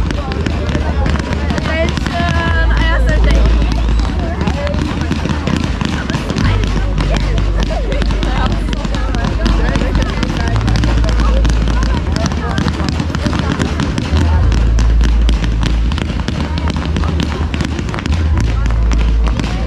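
Fireworks display going off: dense crackling and popping bursts in quick succession over a low rumble, with crowd voices mixed in.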